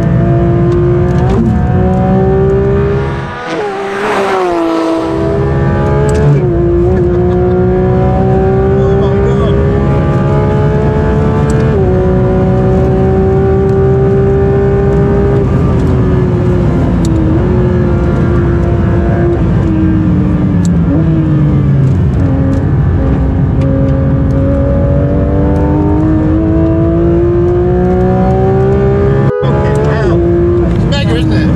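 Porsche 992 GT3 RS's naturally aspirated flat-six, heard from inside the cabin at full effort on track. Its note climbs and falls with the revs and gear changes, with a brief dip and a sharp rise in pitch about three to five seconds in.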